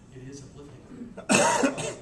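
A person coughs loudly close to the microphone in the second half, a harsh burst with two or three pulses, over faint distant talk.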